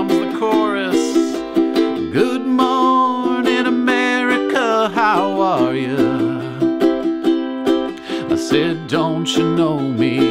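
A ukulele strummed in a steady rhythmic pattern through chord changes, with a man singing along.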